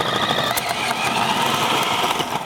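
Cuisinart 8-cup food processor running steadily with a constant motor whine as its shredding disc grates fresh mozzarella pushed down the feed tube.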